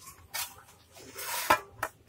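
A kitchen utensil scraping and clinking against a bowl while the bowl is being greased, with two sharp clinks near the end.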